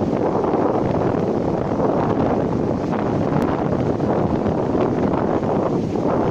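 Strong wind buffeting the camera's microphone, a steady dense rumbling rush.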